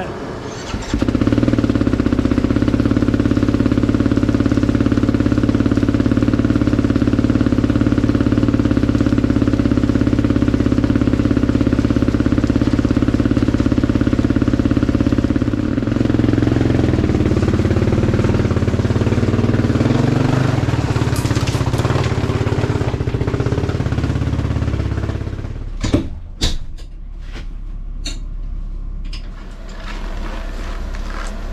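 Snow bike engine idling steadily, then revving up and down, and cut off about 25 seconds in; a run of sharp knocks and clanks follows.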